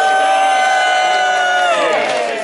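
A crowd of spectators cheering, several voices holding one long "woooo" that slides down in pitch near the end.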